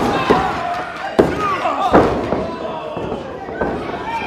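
Crowd and wrestlers shouting, with sharp slaps on the wrestling ring canvas, the loudest near the start and about one and two seconds in, fitting a referee's pinfall count.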